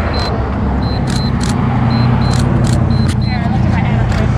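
A car passing on the highway: a steady engine and tyre hum over a noisy rush, strongest through the middle.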